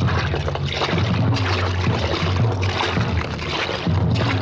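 A film soundtrack: a steady low hum under a rushing noise.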